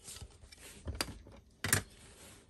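Hard plastic PSA graded-card cases being handled: low rustling and sliding, with a sharp plastic click about halfway through and a louder one near the end.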